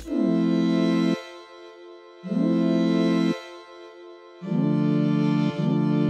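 Chorus of a mellow trap beat: a synth chord progression cut up into held chords about a second long. Two chords come with a second's gap after each, then the chords run back to back from about four and a half seconds in, over a softer sustained layer above them.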